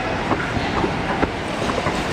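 Inclined moving walkway running: a steady rumble with short clicks and clatters a few times a second from its moving pallets.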